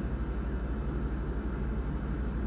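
Steady low rumble of room background noise with a fast, even flutter in it, running unchanged under a pause in speech.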